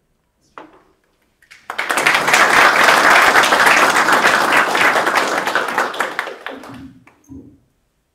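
Audience applauding. It starts about two seconds in, holds steady for several seconds, then fades out.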